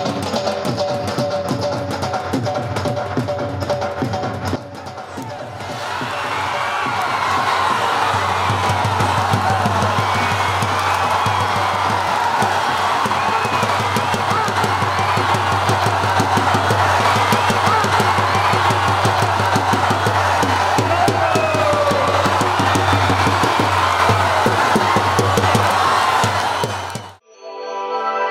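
Drum-heavy music at first. From about six seconds in, a large crowd's noise and shouting over continuous rapid drumming.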